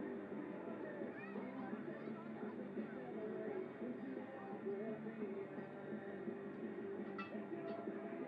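Indistinct background voices mixed with music playing, a steady jumble throughout.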